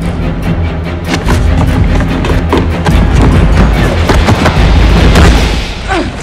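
Film soundtrack from a hand-to-hand fight: loud dramatic score under a quick run of thuds and blows, growing louder toward the end of the struggle.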